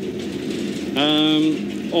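Steady drone of a city bus's engine and road noise inside the passenger cabin, with a man's drawn-out, flat-pitched 'ehh' of hesitation about halfway through.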